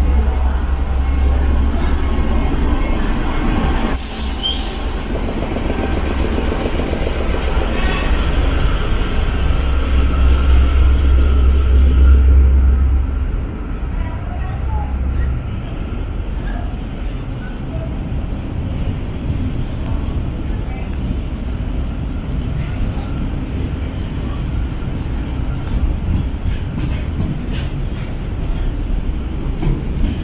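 A diesel-electric locomotive pulling away with its engine running loud and low, loudest just before it drops away about 13 seconds in. After that, loaded container wagons roll past with a steady rumble of wheels on rail and clicks from the wheels and couplings near the end.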